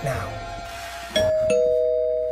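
Doorbell chime ringing ding-dong: a higher note about a second in, then a lower note that rings on.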